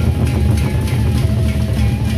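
Gendang beleq ensemble playing: large Sasak barrel drums beaten in a dense, continuous low rhythm, with clashing cymbals and a few held melody notes above them.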